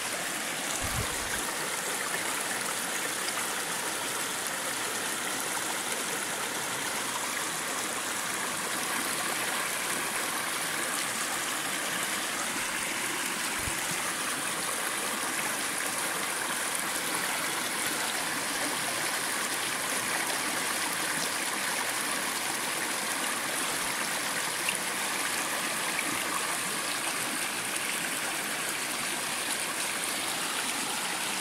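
A shallow, rocky mountain stream flowing over stones and small riffles, a steady, even rush of water.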